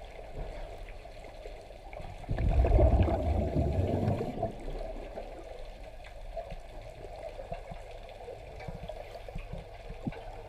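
Muffled underwater sound picked up through a camera housing, with a louder low, bubbling rush about two seconds in that lasts around two seconds: a diver's exhaled air bubbling from a regulator.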